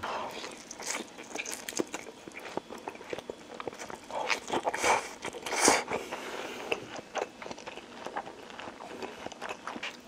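Close-up mouth sounds of someone chewing a large mouthful of soft instant noodles: many small wet clicks and smacks, with a few louder noisy stretches around four to six seconds in.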